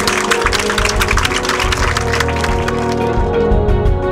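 Audience applauding, a dense patter of many hands clapping that thins out about three seconds in, over closing music that carries on throughout.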